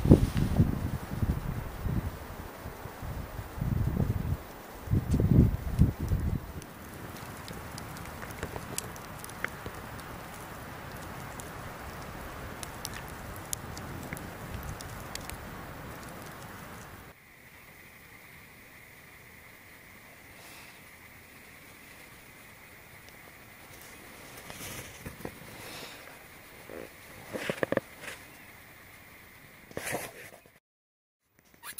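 Wood campfire crackling under a boiling pot, with gusts of wind buffeting the microphone for the first few seconds. After a sudden drop in level a bit past halfway, the fire is quieter over a faint steady high tone, with a few sharp pops near the end.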